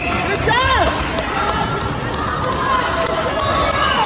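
Players and spectators chattering and calling out in an echoing gym between volleyball rallies, with a short rising-and-falling squeal about half a second in.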